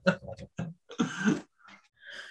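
A person's laughter trailing off in short pulses, then a brief throat clearing about a second in.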